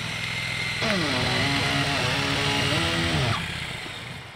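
Triumph Bonneville T100's parallel-twin engine running as the motorcycle rides past. Its pitch drops about a second in, then holds steady, and it fades a little past three seconds.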